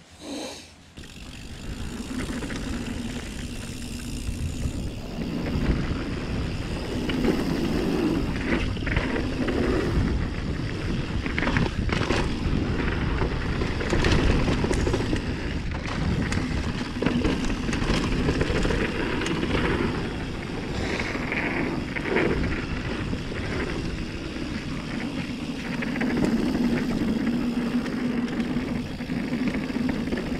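Mountain bike rolling fast downhill over grass and dirt: a steady rumble of tyres and rushing wind on the action camera's microphone, building about a second in, with scattered sharp knocks and rattles from the bike over bumps.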